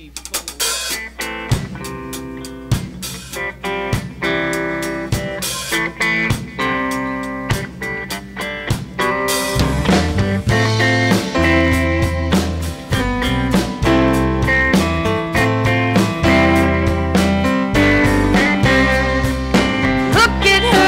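Live band playing a song's instrumental intro: electric guitar picking a melody over a drum kit, with deep bass notes joining about halfway through.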